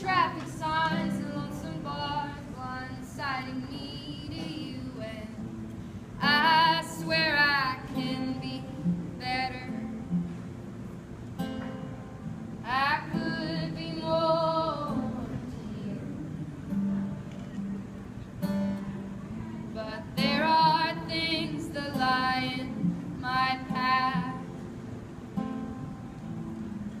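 Live folk song: female voices singing phrases with a strummed acoustic guitar under them, heard from the audience.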